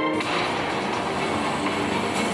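Film soundtrack played over the theatre's speakers: a held sung note breaks off just after the start and gives way to a dense rushing noise with music underneath.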